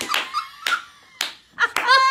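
Several people laughing hard, with high-pitched squealing laughs near the start and again near the end, broken by a few sharp smacks.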